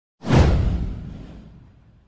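A single whoosh sound effect for an animated intro. It swells suddenly a moment in, with a deep rumble underneath, and fades away over about a second and a half.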